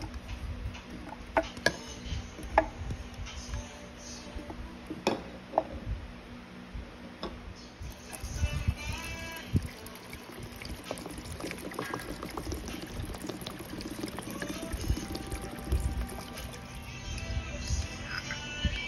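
A few sharp clicks and knocks as fruit and ginger slices are dropped into a clear plastic bottle. Then, from about halfway, water is poured in and fills the bottle, a continuous pouring sound that lasts until near the end.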